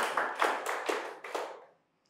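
A small group of students clapping a short round of applause, dying away about a second and a half in.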